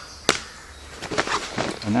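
Kit being handled and set down among plastic bags: one sharp click about a third of a second in, then a string of light knocks and plastic crinkling in the second half.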